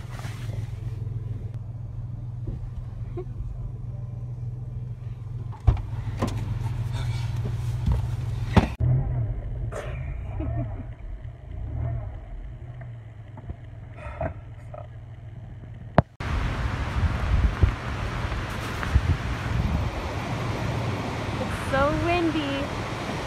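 A 1992 Toyota 4Runner's engine droning steadily inside the cabin on a rough trail, with a few sharp knocks from the bumpy ride. About sixteen seconds in it cuts abruptly to loud rushing wind on the microphone.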